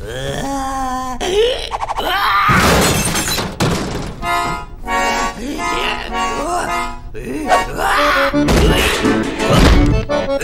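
Cartoon soundtrack: a character's wordless vocal sounds over music, then an accordion sounding sustained chords in the middle. Heavy thuds come near the end as the character falls with the accordion.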